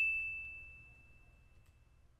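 Single high-pitched, bell-like ding ringing out and fading away steadily, the notification chime of a subscribe-button animation.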